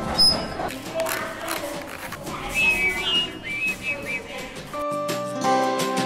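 Busy room sound of children's voices with a few short, wavering high whistle notes in the middle. Background music with held chords comes in about five seconds in.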